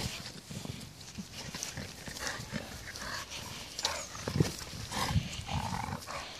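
Labrador–American bulldog cross making short, irregular breathing and mouth sounds as she plays with a ball on grass, a few louder ones in the second half.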